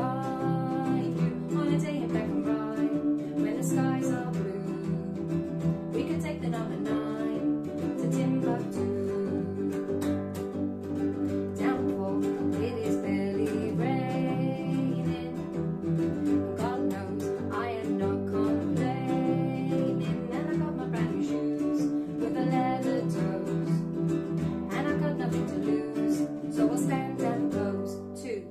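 Baritone ukulele strummed and acoustic bass guitar plucked together in a live acoustic duo, with a woman singing over them.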